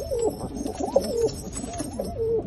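Teddy pigeons cooing in a small wooden loft box: several overlapping coos that rise and fall in pitch, one after another.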